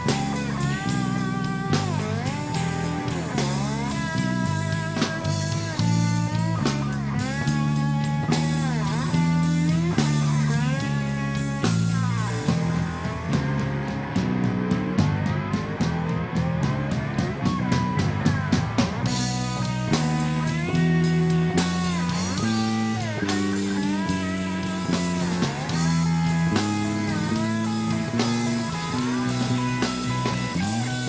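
Live rock band with an electric slide guitar soloing over bass and drums: the slide makes the guitar's notes glide up and down, with a stretch of long sweeping slides in the middle.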